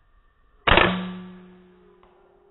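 A single rifle shot about two-thirds of a second in: a sharp crack followed by a ringing tail that fades over about a second.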